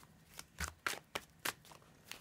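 A tarot deck being shuffled by hand: a quick, irregular string of short, sharp card snaps, about half a dozen.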